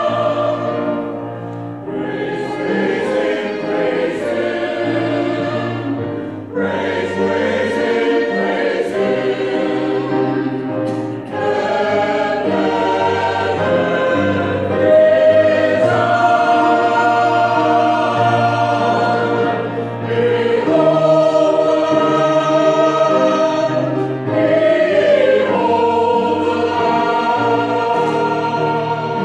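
Mixed choir singing an Easter anthem in parts with piano accompaniment, in phrases with short breaks between them.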